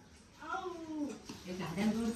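Quiet vocal sounds: a short cry that falls in pitch about half a second in, then a lower murmur near the end.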